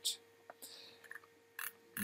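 A few short, quiet clicks of a computer mouse and soft mouth noises over a faint steady hum.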